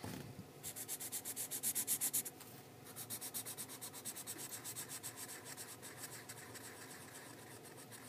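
Black Sharpie marker scribbling back and forth on sketchbook paper, colouring in a solid area with quick rubbing strokes, about six a second. The strokes are louder for the first couple of seconds, then go on more softly.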